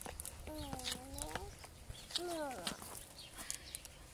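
Metal spoon stirring and scraping a flour mixture in a plastic bowl, with light clicks, over which come two short pitched calls: one held for about a second, then a shorter one that falls in pitch.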